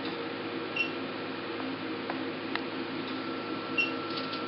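Alma IPL machine humming steadily, with two short high beeps about three seconds apart as the handpiece fires its light pulses, and a couple of faint clicks between them.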